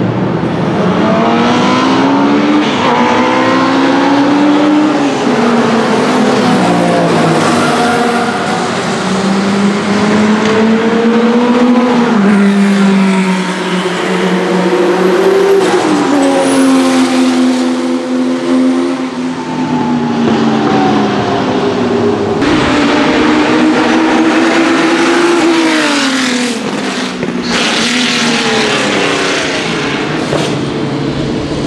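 Porsche 911 RSR 2.1 Turbo's turbocharged 2.1-litre flat-six racing engine accelerating hard through the gears over several passes. Its pitch climbs and drops back at each upshift.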